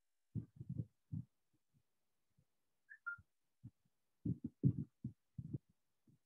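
Scattered soft, low thumps and knocks of a person moving close to the microphone, bunched near the start and again in the second half. About three seconds in comes a short two-note chirp, the second note lower.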